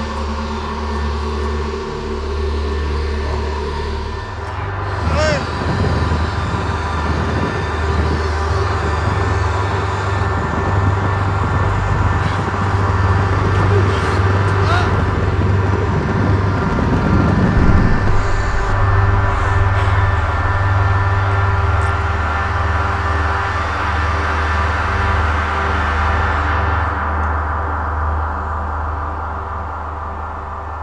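Horror-film sound design: a loud, low rumbling drone with steady held tones underneath. From about five seconds in, a man's strained, guttural groaning and crying out rises over the drone, peaks at about seventeen seconds and dies away. The drone fades near the end.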